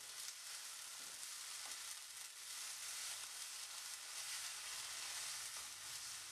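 Sliced onions, green chillies and masala paste sizzling faintly in oil in a nonstick pan as a wooden spatula stirs and scrapes them.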